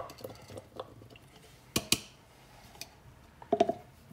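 Kitchen handling sounds: pieces of sliced ginger tipped from a glass bowl into a plastic bowl, then containers handled on a wooden worktop. There are two sharp clacks about two seconds in and a short cluster of knocks near the end.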